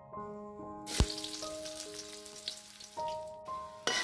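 Oil sizzling in a steel wok as sliced aromatics fry, starting about a second in with a sharp knock of a metal spatula against the wok, and fading near the end before a second knock. Piano background music plays throughout.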